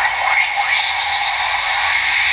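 Steady electronic sound effect from a DX Kyuren-Oh toy robot's small speaker, playing as its lighting gimmick is set off with the Kyutama fitted.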